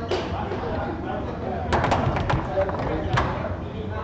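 Foosball play: the ball and the rod-mounted men clacking hard against each other and the table. There is a sharp knock right at the start, a rapid run of clacks about two seconds in, and one more sharp knock near the end, over a murmur of spectator chatter.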